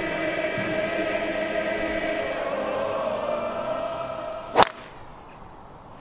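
A long held sung note at one steady pitch, then the sharp crack of a driver striking a golf ball about four and a half seconds in.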